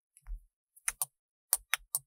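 Long artificial nails tapping and clicking against small glass jars with black lids as they are handled. A soft knock comes first, then about five sharp clicks, the last three in quick succession near the end.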